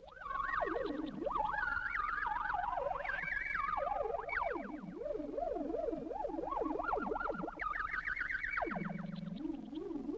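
Electronic sound effect used as the call of the swamp creatures: a single warbling tone with a fast wobble that keeps sliding up and down in pitch, climbing high and dropping low again several times. A short low buzz comes in near the end.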